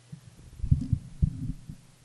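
Handling noise on a podium microphone: a run of low, irregular thumps and rumbles lasting about a second and a half.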